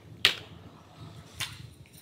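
Two sharp clicks over low room noise, the first, louder one about a quarter second in and the second about a second later.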